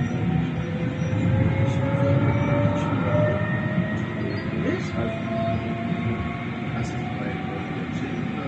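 Tram ride heard from inside the car: a steady rumble of wheels on rails, with a faint electric motor whine that slowly rises in pitch.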